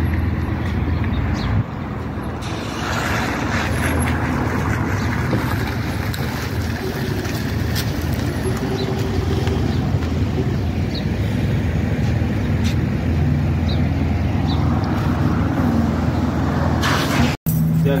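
Steady low rumbling noise, like a running vehicle, with indistinct voices underneath; the sound cuts out completely for an instant near the end.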